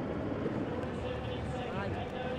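Steady outdoor background noise with faint, indistinct voices in it.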